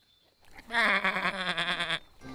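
Cartoon sheep bleating: one long, wavering baa that starts about half a second in.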